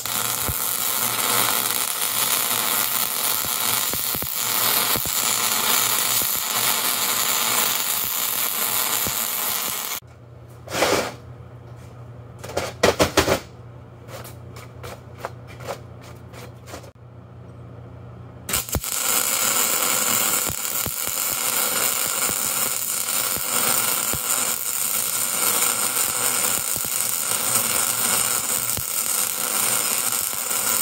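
MIG welder arc crackling steadily as it lays a bead on a cast-steel transmission adapter preheated to about 440°F. The arc stops for about eight seconds near the middle, with a few short clicks and knocks, then strikes again and crackles steadily to the end.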